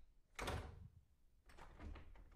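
A door being rattled as someone tries to open it, heard as a few short bursts, the loudest about half a second in.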